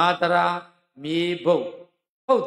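Buddhist monk chanting Pali paritta verses in a near-level, intoned male voice. There are two short phrases with a brief pause about a second in.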